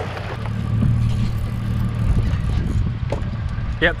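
Boat motor running steadily, a low even hum, with a word spoken just at the end.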